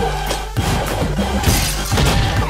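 Film trailer music with a beat about twice a second, laid under fight sound effects: hits and glass shattering.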